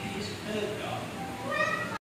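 Indistinct voices of people talking in a room, with a short high-pitched call near the end.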